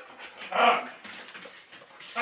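A dog gives one short bark about half a second in.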